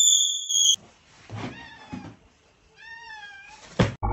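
A steady, high electronic beep cuts off sharply under a second in. A few faint, high calls follow, each rising then falling in pitch, in the manner of meows. A sharp click comes just before the end.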